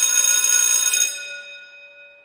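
A bell ringing steadily, which stops about a second in and then rings out, fading over the next second.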